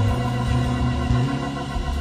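Church organ holding sustained chords.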